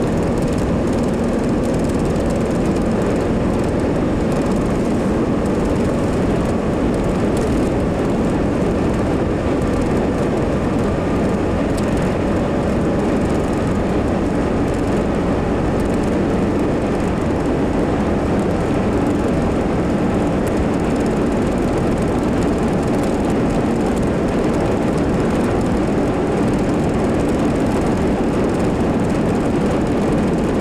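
Steady engine and tyre noise of a moving car, heard from inside the cabin.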